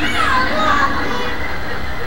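High-pitched, child-like voices from a television playing in the room, loudest in the first second, over a steady low hum.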